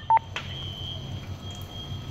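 A single short electronic beep from a two-way radio, a clipped tone a fraction of a second long with clicks at its edges, as the radio is keyed between transmissions; a steady low hum runs underneath.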